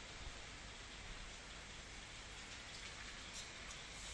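Faint, steady hiss of background room noise, with no distinct events.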